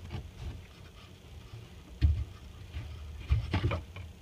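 Soft handling knocks and rubbing as a hand works the chrome shutoff valves under a sink to turn off the water supply: a sudden low bump about halfway through, then a few short knocks near the end.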